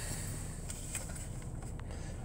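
Steady low hum of a 2016 GMC Acadia's V6 idling, heard from inside the cabin, with a faint click near the end.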